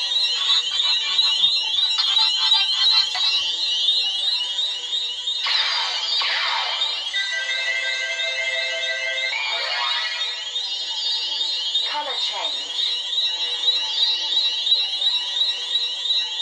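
Xenopixel v3 lightsaber's built-in speaker playing electronic sound-font effects: a rapid, repeating high chirping pattern throughout, broken by falling swooshes a little before and after the middle, with a held chord-like tone of about two seconds between them.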